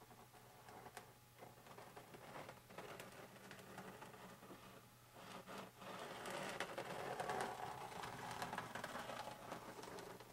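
Faint rustling and light scraping of hands handling a film-covered foam wing and a plastic squeeze bottle of CA glue, busier in the second half, with a few soft clicks over a low steady hum.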